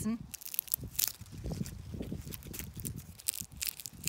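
A dry, papery honesty (Lunaria annua) seed pod rubbed between finger and thumb, giving a run of irregular crackles and rustles. The papery crackle is the sign that the pod is ripe and its seeds are ready to collect.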